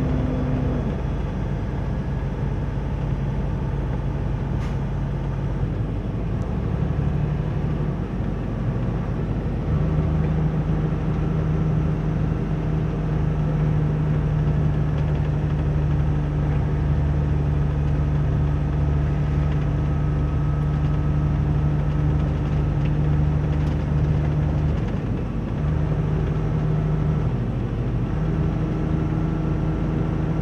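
Semi-truck engine droning steadily inside the cab while driving, over road noise, its pitch shifting a few times as engine speed changes.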